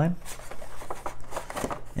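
Light rustling and a few soft clicks as cards and plastic packaging are handled inside a cardboard game box.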